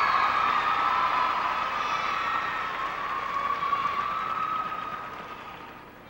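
Audience applauding and cheering for a skater just introduced, dying away toward the end.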